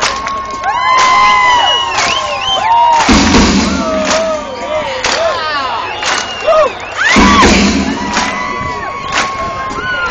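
Concert crowd cheering, with many high whoops and long shouted calls rising and falling in pitch. Under them is a steady beat of claps about once a second, the audience clapping along as asked to hold the beat.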